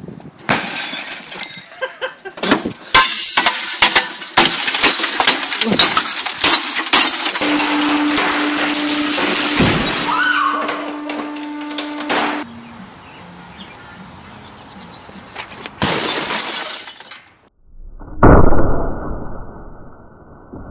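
Cathode-ray tube televisions being smashed, with repeated crashes and shattering glass from the picture tubes, heard across several separate recordings one after another. In the middle a steady low tone runs for about five seconds, and near the end comes one loud, deep bang.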